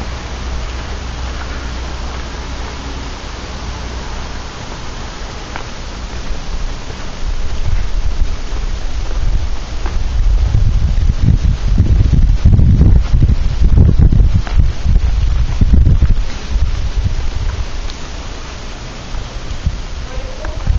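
Wind on the camera microphone: a steady hiss, then heavy, low rumbling buffeting in gusts from about seven seconds in, loudest about midway, easing off again a few seconds before the end.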